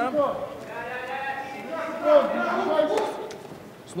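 Shouting voices in a fight arena, drawn out and high, with a sharp smack about two seconds in and a lighter one a second later as strikes land in a clinch against the cage.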